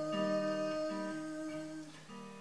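Acoustic guitar played softly, picked notes changing under a long held note that fades out near the end.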